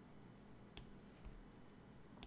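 Near silence: room tone, with one faint short click about three quarters of a second in.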